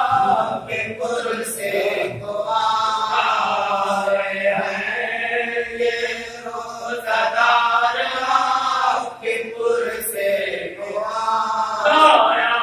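Men's voices chanting a marsiya, an Urdu elegy of mourning, unaccompanied: a lead reciter with supporting voices in long melodic phrases broken by short pauses for breath.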